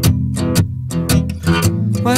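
Recorded music: guitar chords strummed in a steady rhythm, about four strokes a second, over held low bass notes. A higher melodic line comes in near the end.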